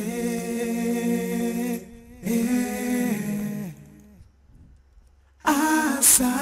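Layered sung vocal harmonies playing back from a multitrack recording, unaccompanied: two long held 'ah' chords, the second sliding down in pitch as it ends, then a brief near-silent gap before a new sung phrase begins near the end.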